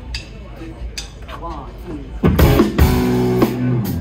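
Live rock band with electric guitars, bass guitar and drum kit starting a song. The first half is quieter, with light guitar sounds and voices; a little past halfway the full band comes in loud with a held chord and drum hits.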